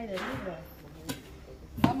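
Kitchen knife slicing a tomato and tapping down on a plastic cutting board, with a sharp tap about a second in, amid conversation.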